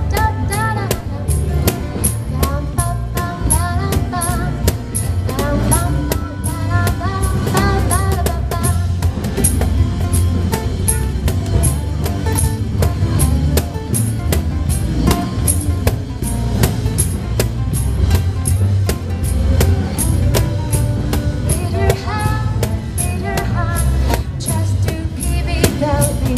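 Live acoustic band playing a song: bass guitar and acoustic guitars over a steady cajón beat. A female voice sings in the first several seconds and again near the end, with the instruments carrying the stretch between.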